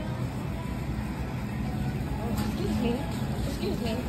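A shopping cart rolling over a store floor, a steady low rumble with a constant hum under it, and people talking faintly in the background from about halfway through.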